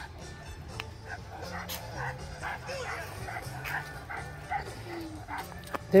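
A dog whimpering softly, a string of short faint whines and yips.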